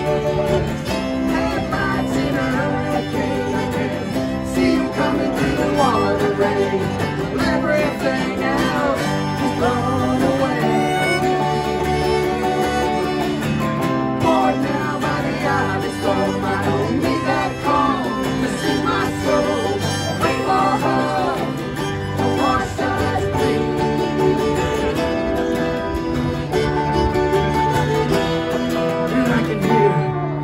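Live acoustic folk band playing an instrumental passage: a strummed acoustic guitar and a cello underneath, with a fiddle carrying a wavering melody on top.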